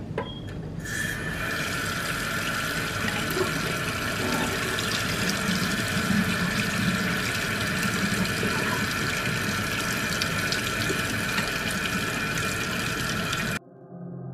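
Water running steadily from a kitchen tap into a metal pot of ramen noodles. It comes on suddenly about a second in and cuts off abruptly near the end.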